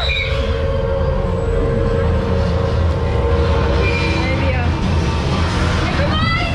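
Roller coaster ride-film soundtrack: a steady low rumble of coaster cars running along the track, with a held whine through the first half.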